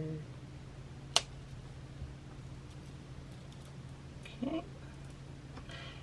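A single sharp snip of jewellery flush cutters closing through the bracelet's cord at the bail, about a second in, over a low steady hum.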